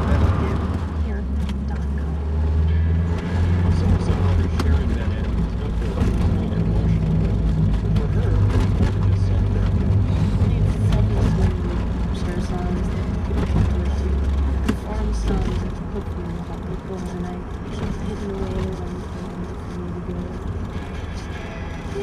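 A car radio playing a station's talk and music inside a moving car, over a low engine and road drone. The drone eases off about two-thirds of the way through.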